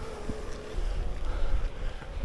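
Wind buffeting a bike-mounted action camera's microphone while riding a road bike, a low rumble that gets stronger about a second in.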